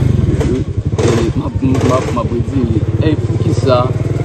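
A small engine running steadily close by, its low rumble pulsing fast and evenly, with men talking over it.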